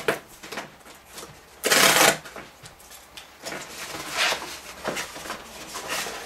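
Cardboard mailer package being torn open and handled, with a louder burst of cardboard noise about two seconds in and softer rustling and scraping after it.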